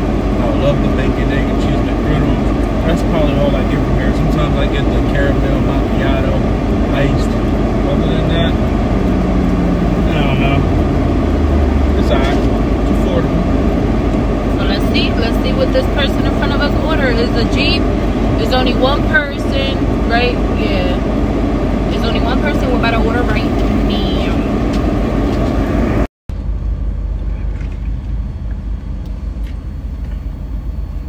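Steady rumble inside a car cabin with the engine running, under indistinct voices. The sound drops out for a moment near the end and comes back quieter.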